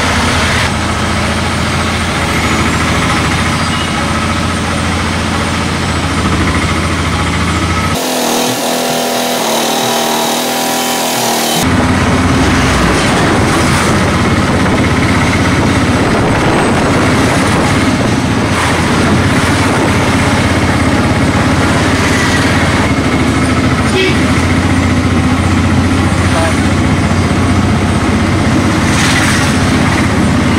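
Engine hum and road noise heard from inside a vehicle driving through town traffic. The sound changes abruptly for a few seconds about 8 s in, then returns somewhat louder.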